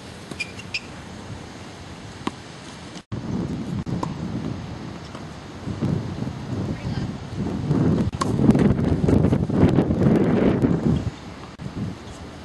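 Wind buffeting an outdoor camcorder microphone: a low rumble that swells in strong gusts in the second half, with a few faint clicks. The audio drops out briefly about three seconds in.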